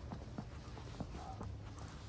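Footsteps on snow-covered ground, about three steps a second.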